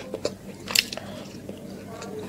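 Close-miked chewing of a mouthful of chicken biryani, with irregular wet mouth clicks and smacks, the loudest a little under a second in. A faint steady hum runs underneath.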